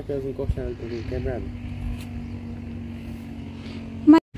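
A motor running steadily in the distance, a single low drone, with a few short voice sounds in the first second and a half.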